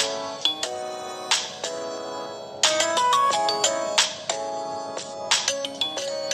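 Background instrumental music: a bright, ringtone-like melody of short struck notes, each starting sharply.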